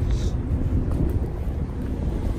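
Low, uneven rumble of wind on a handheld phone microphone, over a 2019 Ram 1500 pickup idling after a remote start.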